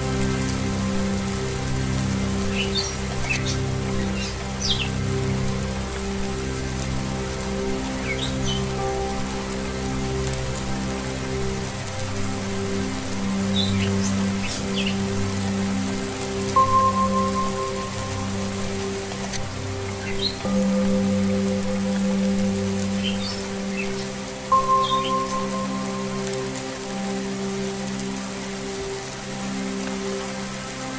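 Steady rain mixed with soft, sustained low Tibetan singing bowl music, with short bird chirps now and then. A brief higher ringing tone comes in twice, about eight seconds apart.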